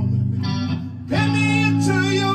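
Electric guitar playing ringing chords, one struck at the start and a new one strummed about a second in.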